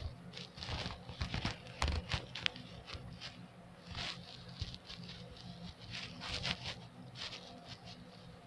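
Short, irregular crinkles, rustles and taps close to the microphone, from hands handling chocolate and its wrapper while eating.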